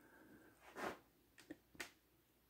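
Near silence broken by a few faint handling knocks and clicks from the camera being moved: a soft bump about a second in, then small clicks near the end.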